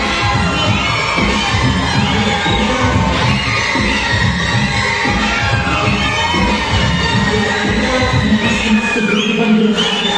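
Loud remix dance music with a heavy, thumping beat, under an audience shouting and cheering. The bass thins out near the end.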